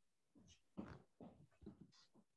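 Near silence: faint room tone with a few brief, soft noises.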